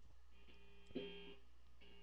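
Faint guitar notes between songs: a held note, a string plucked about a second in and left ringing, and another note sounding near the end, over a low steady hum.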